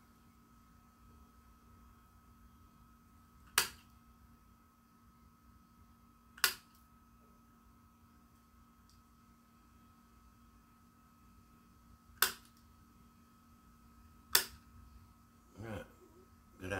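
Hand snips cutting through perforated metal plumber's tape: four sharp snaps a few seconds apart, over a faint steady hum.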